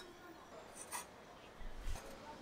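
Fired ceramic cups being handled on a kiln shelf during kiln unloading: a light clink about a second in, then a brief scrape near the end.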